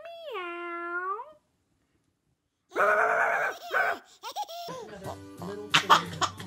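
A baby's drawn-out vocal sound, one long falling-then-rising call lasting about a second. After a short silence a loud burst of voice follows, and background music with a steady beat starts about five seconds in.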